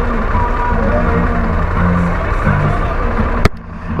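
Harley-Davidson Pan America's Revolution Max 1250 V-twin idling steadily in neutral. A single sharp click sounds about three and a half seconds in, and the level dips briefly after it.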